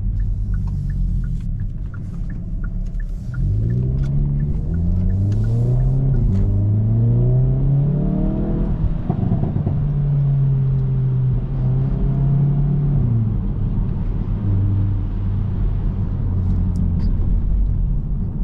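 Hyundai i30 N's 2.0-litre turbocharged four-cylinder engine, heard from inside the cabin, pulls away under acceleration about three seconds in. Its pitch climbs and drops back at each quick upshift of the eight-speed dual-clutch gearbox, then holds steady at cruising speed and steps down once more a few seconds before the end.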